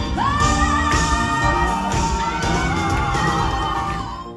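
Female pop-soul singer performing live with a full band of drums, bass, guitar and keyboards in a large hall, sliding up into a long held note and then holding another. The music breaks off at the very end.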